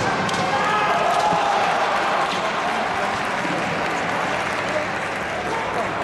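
Kendo bout on a wooden gym floor: fencers' shouts (kiai) over a steady hall crowd noise, with a few sharp knocks of shinai strikes or stamping feet in the first couple of seconds.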